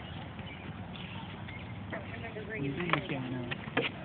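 Quiet outdoor background with faint talking a little before three seconds in and a couple of light clicks.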